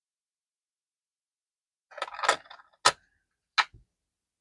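Silence for about two seconds, then a brief rustle and two sharp clicks with a faint third, about half a second to a second apart. The sounds are handling noise as copper Lincoln cents are turned between gloved fingers.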